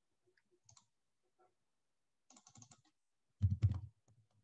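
Computer keyboard typing and clicking: a few faint taps, a cluster of keystrokes past the middle, and a louder burst of clicks with a low thud near the end.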